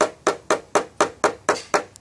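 A hammer tapping quickly and evenly on a knockdown tapper held against a Subaru Crosstrek's sheet-metal deck lid, about five strikes a second. It is knocking down the high spots around a dent: the taps ring hollow, like the back of a metal drum, where the metal is still under tension, and sound normal once it is flat.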